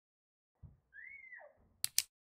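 Mostly quiet: a faint low thud about half a second in, a short faint tone that rises then falls, then two sharp clicks in quick succession near the end.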